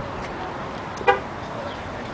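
A short car-horn toot about a second in, over steady outdoor background noise.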